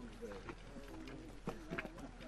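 Faint, distant voices of people talking, with a couple of sharp clicks near the end.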